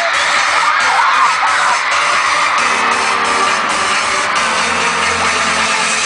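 Arena crowd screaming and cheering, loud and dense. About two and a half seconds in, a song's sustained instrumental intro comes in over the PA beneath the screams.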